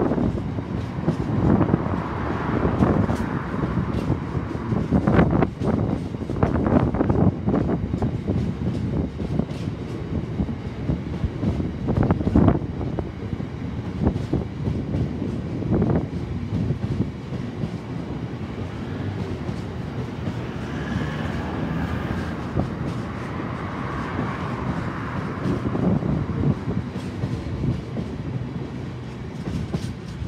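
Long freight train of covered hopper wagons rolling past, its wheels clattering over rail joints with irregular sharp clanks over a steady rumble. A faint higher-pitched squeal rises about two-thirds of the way through.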